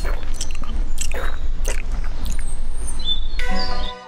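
Animation sound effects: a steady low rumble with several short crunching sounds, then music with plucked, ringing notes starting a little past three seconds in, as the rumble cuts off.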